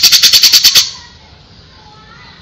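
Cucak jenggot (grey-cheeked bulbul) giving a loud, fast rattling burst of about a dozen sharp high notes that stops about a second in.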